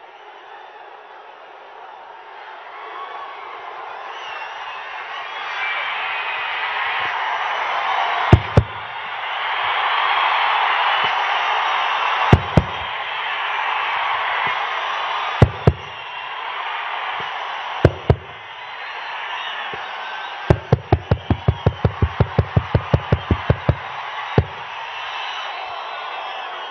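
Large crowd cheering, the din swelling over the first several seconds. It is broken by loud sharp thumps, first in pairs a few seconds apart, then a quick even run of about five a second lasting some three seconds.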